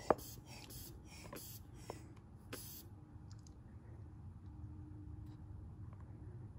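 Faint water lapping and dripping in a plastic bowl as an inflated air wedge is held under water for a leak test. There is one sharp click right at the start and a few softer ticks over the next couple of seconds, then only a low steady room hum.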